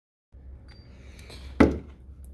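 A moment of dead silence, then faint handling ticks and one sharp knock about one and a half seconds in: a screwdriver set down on a wooden workbench.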